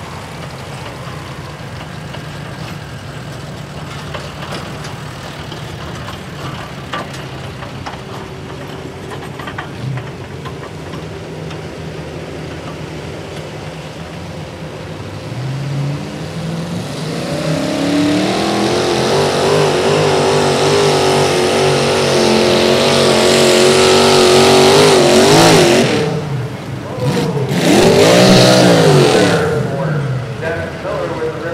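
Mini modified pulling tractor's engine running quietly, then revving up about halfway through and running loud at high revs, its pitch wavering as it pulls. The engine cuts back briefly, then gives one more loud burst of revs near the end before dropping off.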